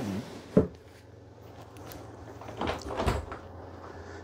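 A pantry cabinet door is unlatched and swung open, with a rattle and a knock about three seconds in. A dinette seat lid is set down near the start.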